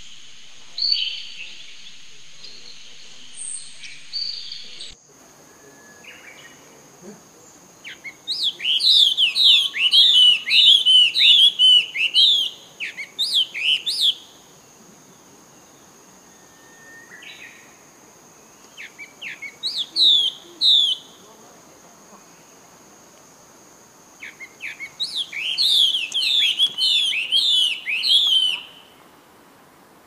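Bird song: three bouts of rapid, repeated down-slurred whistled notes, over a faint steady high tone. A different high, noisy sound fills the first few seconds and cuts off abruptly about five seconds in.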